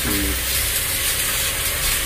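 Pork skin pieces frying in a wok over a gas burner: a steady sizzle.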